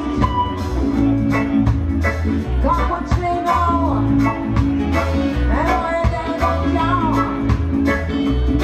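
Live reggae band playing a song: a heavy bass line and regular drum strokes, with guitar and a lead singer's voice over them.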